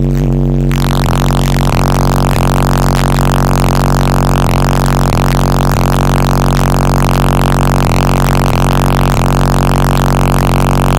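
A car-audio system of six 18-inch subwoofers on three HD15K amplifiers holding one steady bass note at extreme level inside the vehicle, overloading the microphone into a distorted buzz. About a second in it turns harsher and hissier, as the cabin rattles and the recording clips.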